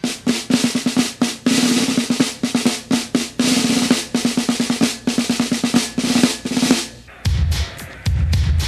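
Snare drums playing a fast pattern of rolls and sharp strokes. Near the end they stop and a deep bass beat comes in.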